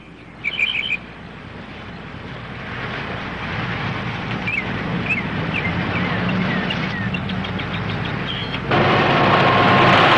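Small birds chirping in short, high, falling calls over a low rumble that slowly grows louder. Near the end this gives way abruptly to the louder, steady rush of a car driving fast over dirt.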